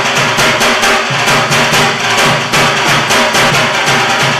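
Dhak, the large barrel drum of Durga Puja, beaten with thin sticks in a fast, steady rhythm of about four to five strokes a second.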